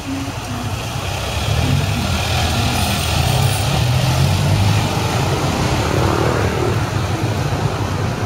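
Street traffic, with motor scooters and cars passing and their engines getting louder about a second and a half in.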